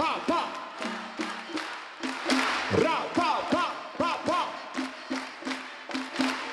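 A cappella merengue: voices singing and making rhythmic percussive vocal sounds, with hand-clapping keeping a clave-style beat and the crowd joining in.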